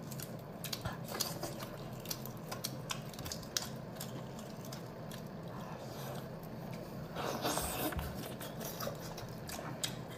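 Close-miked eating of boiled half-hatched chicken eggs (huozhuzi): moist chewing with many small clicks and crackles of eggshell being peeled, over a low steady hum. A louder rustle comes about seven seconds in.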